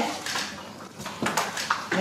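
A few light clicks and knocks of small hard objects being handled, clustered from about a second in, with a short ring after them in a small room.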